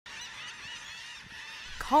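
Seabirds calling at a nesting colony: a quick run of high, arched calls in the first second over a steady hiss.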